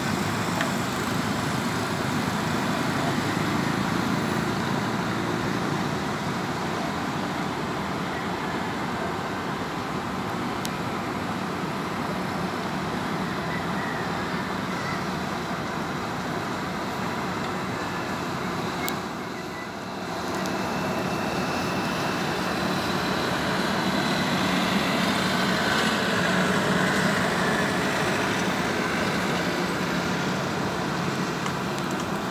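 Steady wash of distant road traffic noise, with no distinct vehicle standing out; it dips briefly about two-thirds of the way through.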